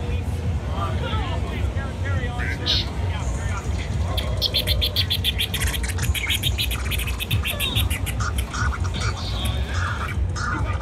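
Vinyl scratching on a DJ turntable, rapid back-and-forth strokes coming in about four seconds in, over a bass-heavy beat playing loud through the booth's speakers, with voices in the crowd.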